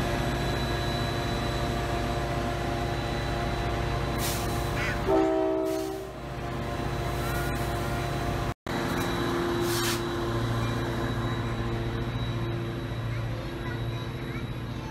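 Trinity Railway Express commuter train's diesel locomotive running at a station, a steady low engine drone. About five seconds in comes a short horn blast of several tones, and there are two brief hisses.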